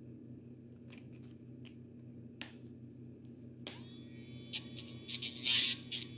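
Electric pet nail grinder with a metal grinding bit running with a faint steady hum, with a few light clicks. From a little past halfway it grinds against a dog's toenail, a rough high-pitched grinding that grows louder near the end.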